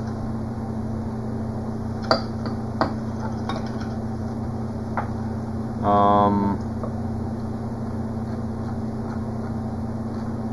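Steady low background hum, with a few faint clicks and one short, flat-pitched tone about six seconds in.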